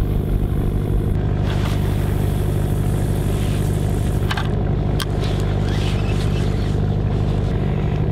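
A fishing cutter's engine running with a steady low drone. A couple of sharp clicks sound about halfway through.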